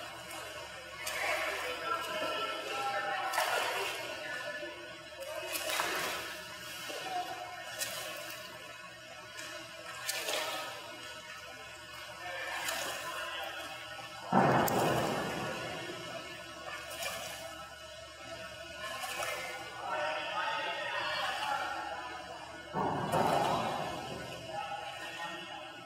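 Water splashing in irregular surges from a swimmer's strokes, with two sharper, louder splashes about 14 seconds in and near the end, over background music and distant voices.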